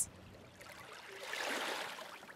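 Faint wash of small waves lapping in shallow water at the shore, swelling in the middle and fading again.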